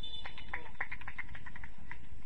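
An animal calling: a rapid run of about eight to ten short chirps over about a second and a half, heard over the steady background noise of the field.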